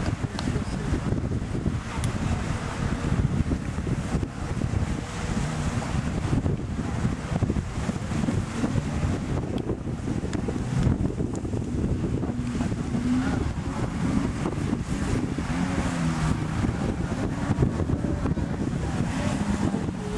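Wind buffeting the microphone in a steady, rumbling rush, with a faint wavering hum underneath in the second half.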